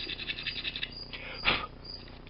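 Small hand file rasping over the brass key pins that stick up from a lock plug clamped in a vise, filing them flush with the shear line. Quick scratchy strokes for the first second and a half, with one louder scrape about a second and a half in.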